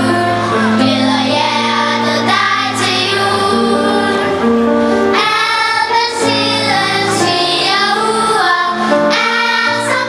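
Children's choir singing a song with instrumental accompaniment: a sung melody over held chords and a low bass line, continuing throughout.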